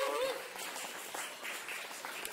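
Small congregation applauding, the clapping slowly fading. A man's drawn-out 'ooh' trails off at the very start.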